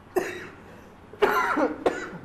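A person coughing: a short cough just after the start, then a longer, louder cough with a rough voiced sound about a second later, followed by a sharp click.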